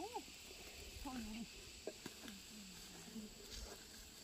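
Faint, scattered talking from people working close by, over a steady high-pitched drone of insects.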